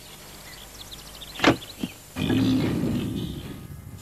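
Two sharp knocks, then a wild boar's rough, grunting squeal for about a second and a half, fading out as the animal bursts out of the estate car's boot.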